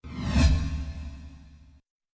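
Whoosh transition sound effect: a falling high swish over a deep low boom, swelling in about half a second and fading away. It is cut off abruptly just under two seconds in.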